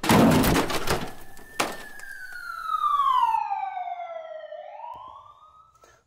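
Crash and siren sound effects: a loud burst of crashing noise, a sharp knock about a second and a half in, then a siren wailing down in pitch and starting to rise again near the end.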